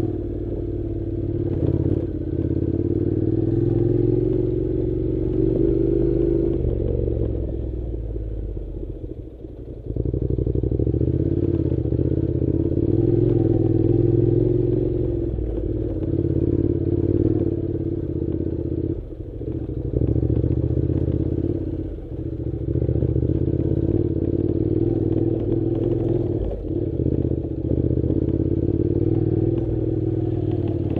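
Honda NC700 parallel-twin engine pulling at low speed over a rough dirt track. The throttle is eased off a few seconds in and the engine note sinks, then picks up again sharply about ten seconds in. There are brief dips a few more times as the rider works the throttle.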